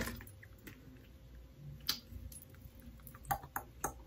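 Faint, sparse clicks and taps from a small plastic liquid eyeliner bottle being handled, with a few quick clicks together near the end.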